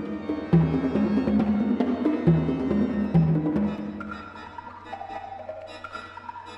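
Pipe organ and percussion playing a modern toccata together. Loud low notes step about with sharp percussion strikes for roughly the first four seconds, then the music drops to quieter, higher held organ notes.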